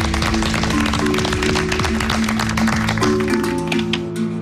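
Background music: held notes over fast, busy percussion, with the notes changing about three seconds in.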